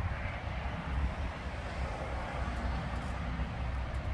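Steady low rumble with a light hiss of outdoor background noise.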